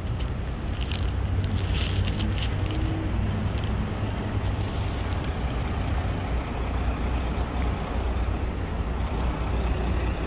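City street traffic: a steady low rumble of cars and buses on the road alongside, with a few light clicks in the first few seconds.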